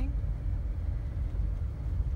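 Steady low rumble heard inside the cabin of a Subaru XV rolling down a dirt track, tyres on gravel. X-Mode's hill descent control is holding the speed with no pedal input.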